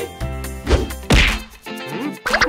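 Cartoon sound effects added in editing: a swoosh with a falling pitch, then a loud whack just after a second in that dies away quickly.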